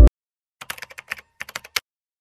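A quick run of keyboard typing clicks, about a dozen in two short runs, used as a typing sound effect for a title card. Background music cuts off at the very start.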